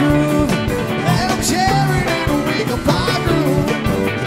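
Live rock band playing: electric guitar lines with bending pitches over bass and a steady drum beat.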